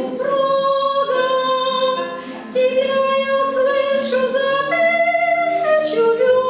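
A woman singing to her own acoustic guitar accompaniment, holding long notes, with a short break for breath a little before halfway.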